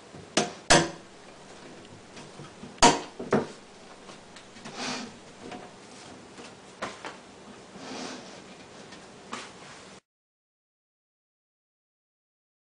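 Acrylic lid panels being set onto and shifted on the plastic rim of a glass aquarium: a few sharp clicks and knocks, the loudest about three seconds in, with softer scraping between. The sound cuts off about two seconds before the end.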